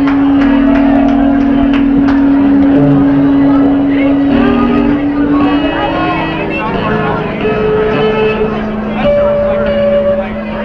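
Loud live garage-punk band: distorted electric guitars hold sustained, droning feedback tones that shift in pitch, with shouting over them. The steady drum beat thins out near the start, as at the ragged close of a song.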